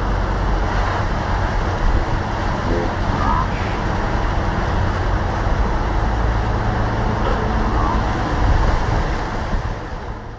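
A 300-horsepower outboard motor running steadily at cruising speed, with the wake churning and rushing behind the hull.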